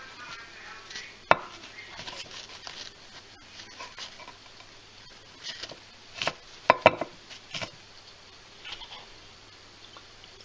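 Lumps of dug-up lead and rusted iron being handled and set down on kitchen paper: light rustling with scattered clicks and knocks, one sharp knock about a second in and a cluster of knocks around six to eight seconds in.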